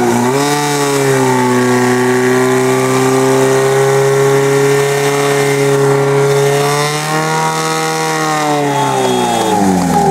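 Portable fire pump's engine running flat out at high revs while pumping water through the attack hoses. The pitch holds steady, climbs a little about seven seconds in, then falls away near the end as the revs drop.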